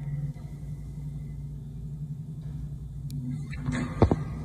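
Low, steady rumble of a tracked military vehicle's engine in the street, with a sudden louder burst of noise just before the end.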